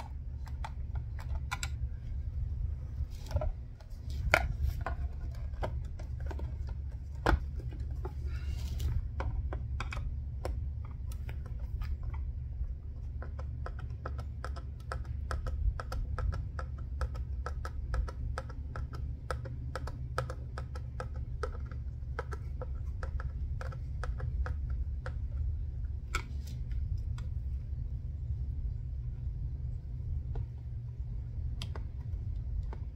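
Small repeated clicks as screws are turned by hand into the plastic housing of a Minn Kota trolling-motor head, a few clicks a second, with a couple of louder knocks in the first several seconds. A steady low rumble runs underneath.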